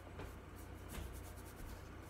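Faint strokes of a watercolour brush across paper, over a steady low hum.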